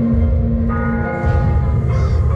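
Eerie background music with a bell struck about two-thirds of a second in, its tones ringing on and fading, over a steady low rumble.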